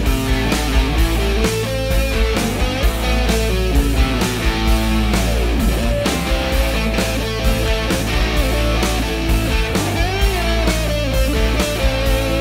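Electric guitar solo over a rock backing with a steady drum beat and bass. The lead bends its notes, swoops deep down in pitch about five seconds in, and holds a wavering note near the end.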